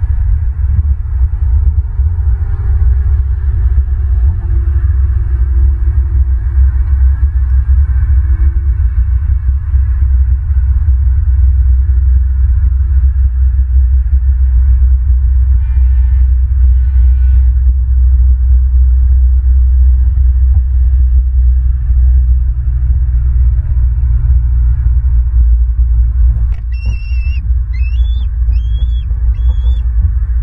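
Wind buffeting an outdoor microphone, a loud steady low rumble. Over it a bird gives two short nasal calls about halfway through and a quick series of about four short rising whistled notes near the end.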